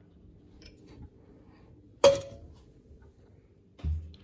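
Quiet room with a faint steady hum, broken by one sharp knock with a brief ring about halfway through, and a short low thud near the end.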